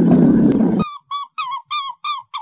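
A loud, rough big-cat growl that cuts off abruptly just under a second in, followed by a quick series of short honking calls, about three a second, each falling in pitch.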